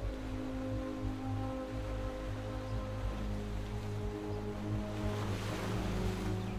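Slow ambient meditation music of sustained, held tones. A soft wash of ocean-wave sound swells near the end.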